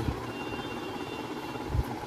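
Steady low background rumble, with a faint thin high whine through most of it.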